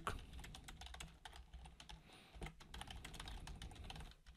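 Typing on a computer keyboard: a fast, uneven run of faint keystroke clicks as a line of code is entered.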